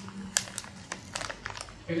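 Several short, sharp crinkling clicks during a pause in speech, with a voice starting again right at the end.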